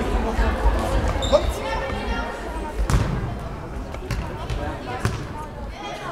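Indoor football in a sports hall: several sharp thuds of the ball being kicked and bouncing on the hall floor, with players and spectators calling and shouting, all echoing in the large hall.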